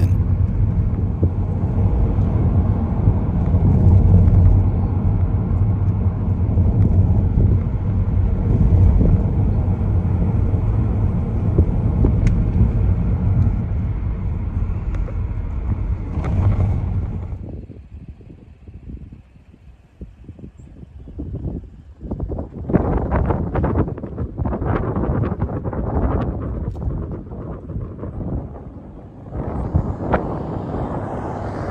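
Steady low rumble of a car driving on the road. About halfway through it drops away, and from about two-thirds in, wind gusts buffet the microphone in irregular bursts.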